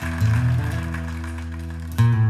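Music played through a pair of Magnat Transpuls 1000 loudspeakers in the room: sustained notes over a strong, steady bass line.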